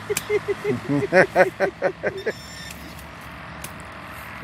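A person laughing in short, rhythmic bursts for about the first two seconds, then dying away, over a steady low rumble of distant road traffic. A couple of sharp knocks, from the small digging tool striking the soil, are heard, one near the start and one near the end.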